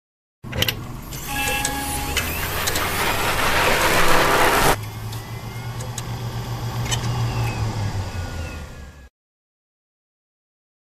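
Sound design of an animated conference title sequence: a noisy swell with scattered clicks builds and cuts off abruptly about halfway through. A lower steady drone follows and fades out about a second before the end.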